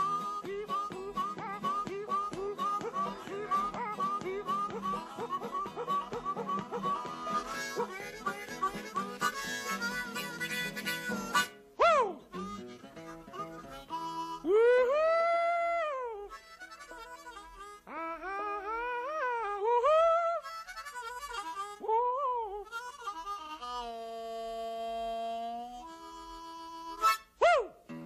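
Diatonic blues harmonica playing fast, rhythmic phrases over acoustic guitar. After about twelve seconds the harmonica carries on alone with long bent notes that slide up and down.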